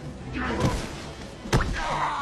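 A man is thrown down onto a concrete floor in a scuffle. A single sharp thud comes about one and a half seconds in, with background music underneath.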